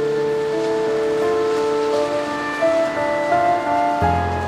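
Background music of long-held notes, with the melody moving to new pitches in the second half.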